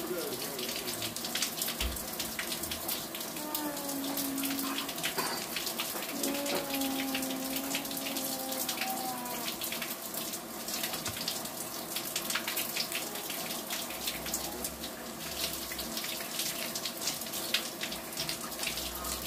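Water running steadily from an outdoor tap and splashing into a basin below, with hands rinsing a small dish in the stream.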